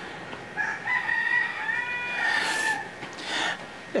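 A rooster crowing once, a single long call of about two seconds. Two short breathy noises follow near the end.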